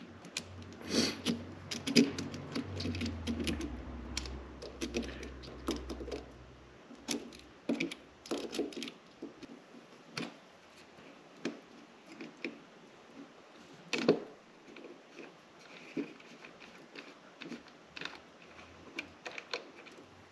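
Small metal tool clicking and scraping against the brass SMA antenna nut on a handheld radio as the nut is worked loose, in irregular taps and clicks. A low hum sounds under the clicks for the first several seconds.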